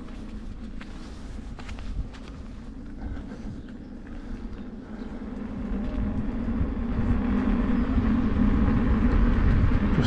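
Riding noise from an Inmotion V12 electric unicycle on a paved path: a steady low hum from the hub motor and tyre with rumbling wind on the microphone, growing louder in the second half.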